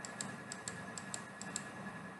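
Faint, light clicking, a few clicks a second, over a quiet steady hum: a computer's controls being worked to skip forward through a video.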